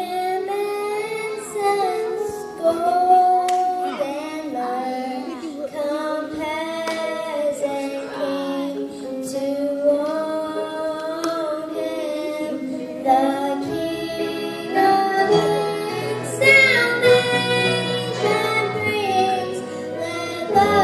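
A young girl singing a Christmas song solo into a microphone over a PA, with instrumental accompaniment; low bass notes join the accompaniment in the second half.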